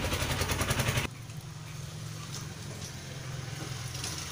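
A loud, rapid rattle cuts off suddenly about a second in. After it a low steady hum remains, with faint rustling of paper being folded by hand.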